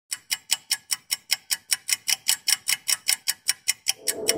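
Ticking-clock sound effect: rapid, even ticks at about five a second.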